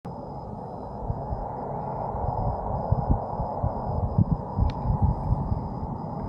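Wind buffeting a handheld 360 camera's microphone, an uneven low rumble of gusts, with a single click a little before the end.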